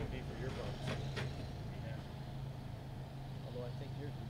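A vehicle engine idling with a steady low hum. Two sharp clicks come about a second in, with faint voices in the background.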